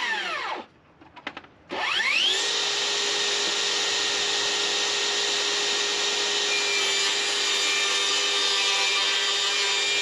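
Cordless DeWalt 60V table saw motor winding down, then switched back on about two seconds in, whining up to speed and running steadily while plywood is fed through the blade in the second half.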